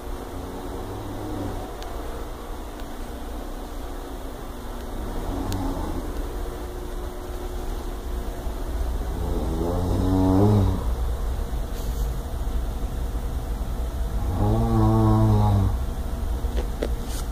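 A man snoring in his sleep: long, low, droning snores about every five seconds, each lasting over a second, the first faint and the later ones louder, over a steady low rumble.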